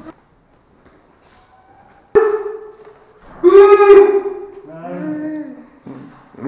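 A person's voice making drawn-out, wordless calls: a short one starting suddenly about two seconds in, a longer, louder one near the middle, and a lower, wavering one just before the end.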